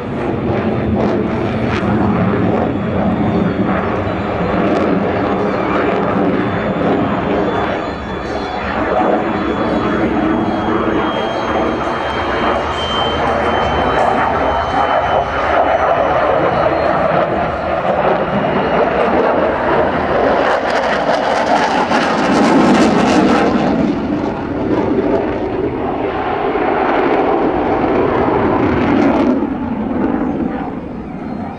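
A Dassault Rafale fighter's twin jet engines making loud, continuous jet noise as it manoeuvres through its display. The noise swells to its loudest a little past two-thirds of the way through and eases slightly near the end.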